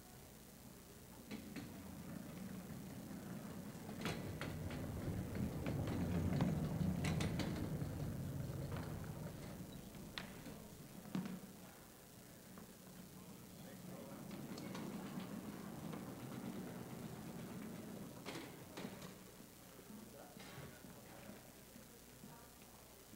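Indistinct murmur of voices in a hall, with scattered knocks and clicks from music stands and percussion equipment being moved about on stage.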